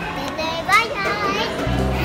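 A young child's voice with a high, sharp squeal just before a second in, over background music; a low, steady music note comes in near the end.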